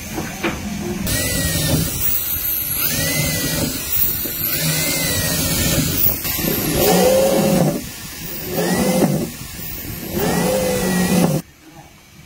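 Drill press boring the tuning-peg holes in a wooden guitar headstock. The motor's whine rises and falls about six times, roughly every two seconds, one for each hole as the bit cuts into the wood, and cuts off suddenly near the end.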